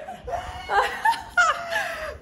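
A woman laughing, in short bursts.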